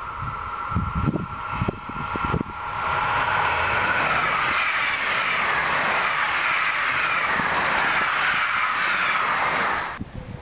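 Electric passenger train passing close by at speed: a loud rush of wheels on rails sets in about two and a half seconds in, its pitch sinking slowly as it goes by, and cuts off abruptly near the end. Before it arrives, a steady high tone and gusts of wind on the microphone.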